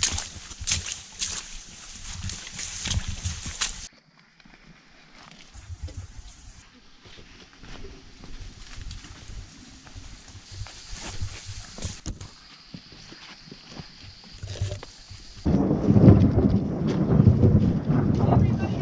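Steps and rustling along a wet jungle trail, then a low, loud rumble of thunder that starts about fifteen seconds in and keeps rolling.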